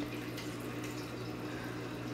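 A steady hiss with a low hum under it and nothing else happening: background noise of the recording.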